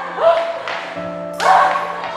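Film soundtrack music under a beating: a voice crying out in bending, wavering pitches, with a sudden loud blow or cry about one and a half seconds in.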